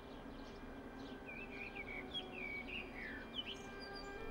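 Faint birdsong from a small bird: short high chirps, then from about a second in a run of warbling whistled notes that slide downward, over a low steady hum.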